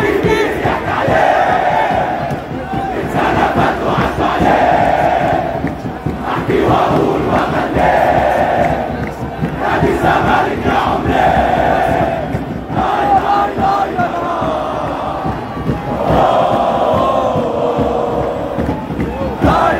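A large, loud crowd of football supporters chanting in unison to celebrate a league title. Long drawn-out shouted notes come back every couple of seconds over continuous crowd noise.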